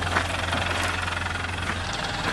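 Four-wheel-drive's engine idling, a steady low drone that stops just before the end.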